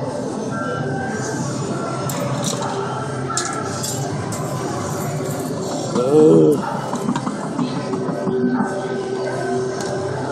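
Arcade din: overlapping game-machine music and chatter in a large hall, with a few light clinks. About six seconds in, a brief, loud wavering pitched sound rises above it.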